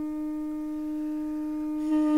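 Armenian duduk holding one low note, steady and unbroken, in a quiet passage of a slow duduk piece.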